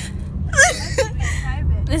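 A woman laughing in high, breathy, gasping bursts about half a second and a second in, over the steady low road rumble inside a moving car.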